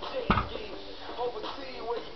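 A 225 lb loaded barbell touching down on the ground during a deadlift rep: one heavy thud about a third of a second in, part of a steady rep every two seconds or so.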